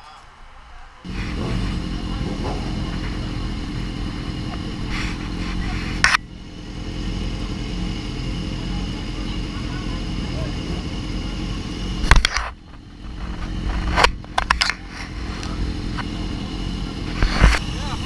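BMW S1000RR's inline-four engine catching about a second in and then idling steadily, with a few sharp knocks over it.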